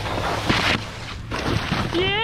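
Water spraying and splashing as a wakeboard cuts through shallow water and the rider falls, with two louder splashes about half a second and a second and a half in, over a steady low rumble.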